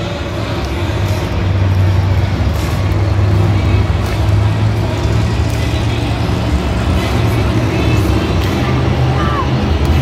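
Monster truck engines running hard during a race, a loud, steady low drone that swells about a second in and holds, echoing through the stadium.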